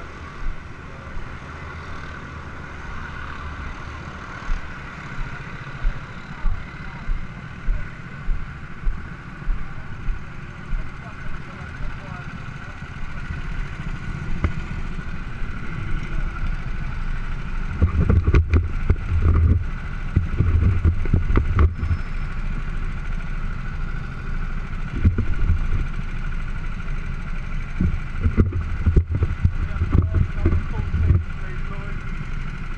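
Go-kart engines idling in a pit-lane queue, a steady drone, with evenly spaced thuds of footsteps through the first twelve seconds or so. From about eighteen seconds in, heavy low rumbling comes in irregular bursts.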